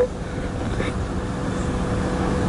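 A woman crying at a microphone, a short sob at the start and a faint breath a little under a second in, over a steady low rumble and a faint steady hum from the sound system.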